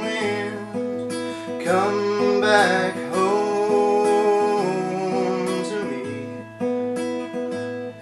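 Steel-string acoustic guitar with a capo, strummed chords that change about every second.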